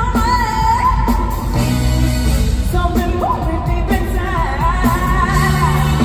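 Live pop music played through an arena's sound system: a female lead vocal sung into a microphone over a band with heavy bass.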